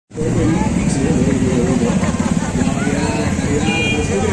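A vehicle engine running steadily under several people talking in the street. There is a brief high beep near the end.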